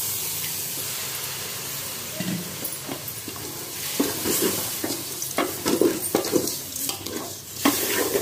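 Water poured into a hot metal pot of fried fish and masala sizzles with a steady hiss that slowly dies down. From about halfway, a wooden spatula stirs the mixture, with repeated scraping and knocking strokes against the pot.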